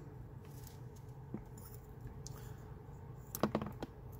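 Small metallic clicks and taps from handling a freshly opened brass Abus EC75 dimple padlock and its lock-picking tools, with a quick cluster of sharper clicks about three and a half seconds in.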